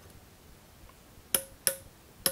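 Two sharp metallic clicks about a third of a second apart, a little over a second in, each with a faint short ring, as a steel plug gauge knocks against the bore of a machined aluminium cylinder.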